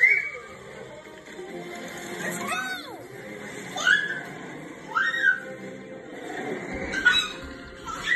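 Animated cartoon soundtrack playing from a TV: background music with a string of whistling sound effects that rise and fall in pitch, about one every second or so.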